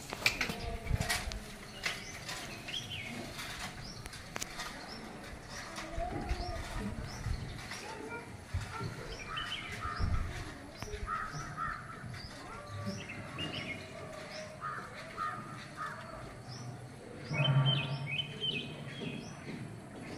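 Birds calling: a run of short, evenly repeated high chirps with harsher, crow-like calls among them, the loudest call coming near the end.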